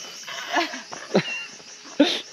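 People laughing in a few short bursts over a steady, pulsing chorus of rainforest insects.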